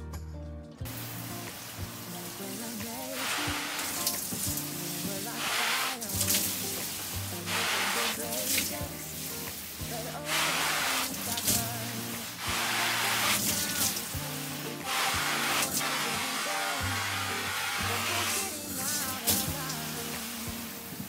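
Water sprayed in short, repeated hisses every second or two onto the shell of a down jacket, testing its water-repellent finish, over background music.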